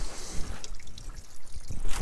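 Water trickling steadily, with a faint hiss.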